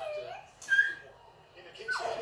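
A child's wordless voice: a bending coo in the first half-second, then a short high-pitched squeal just under a second in.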